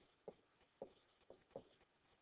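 Faint, short taps and scratches of a stylus writing on a tablet, about five separate strokes.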